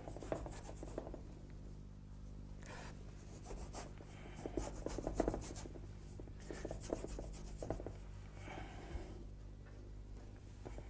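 A flat paintbrush scrubbing oil paint onto a board, faint, in several short strokes with pauses between.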